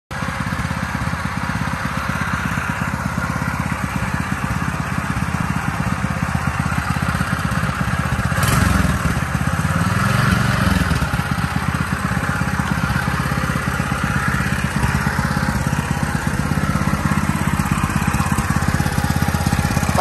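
Lifan 6.5 hp single-cylinder four-stroke petrol engine with a slow-speed reduction shaft, running steadily on the bench. About halfway through its speed swings briefly down and back up before settling again.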